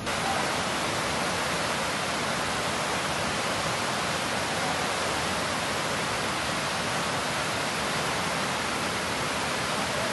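Whitewater rapids of a mountain river rushing past, a steady, even noise with no change.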